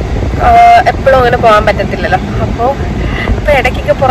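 A woman talking over the steady low rumble of a moving car, heard from inside the cabin.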